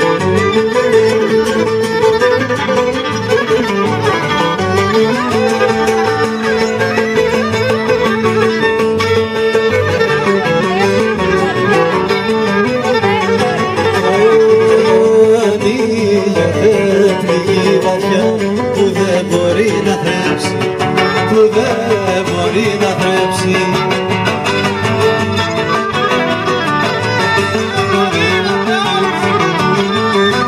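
Cretan folk ensemble playing: violin carrying the melody over two laoutos and an acoustic guitar strumming the bass part.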